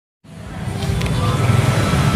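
Low, steady rumble of vehicle engines and traffic, with faint voices mixed in. It fades in just after a moment of silence at the start.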